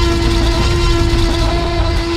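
A film Tyrannosaurus rex roar, loud and long with a deep rumble, over one held note of trailer music.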